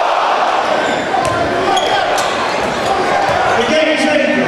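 Live game sound in a crowded gym: many spectators' voices chattering in a reverberant hall, with a few sharp basketball bounces on the hardwood floor.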